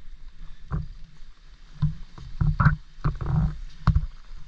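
Small sea waves splashing and sloshing against shoreline rocks in a series of irregular splashes, the longest near the end, over a steady low rumble of wind and surf.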